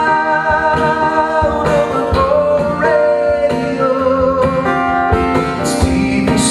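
Male voice singing long held notes over a strummed acoustic guitar, in a live solo performance.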